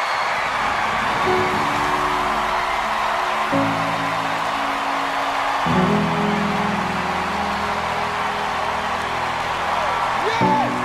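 Large audience applauding and cheering, with music underneath: sustained chords that come in about a second in and change twice.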